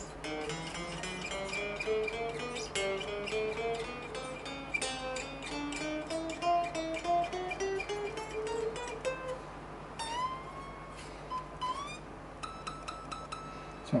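Electric guitar strings, a Fender Duo-Sonic's, picked note by note climbing up the fingerboard with each note bent upward, as a check for bends choking out after fret levelling. Near the end, high notes on the last frets are bent and then picked repeatedly; this is the only spot where a bend chokes out, and only barely.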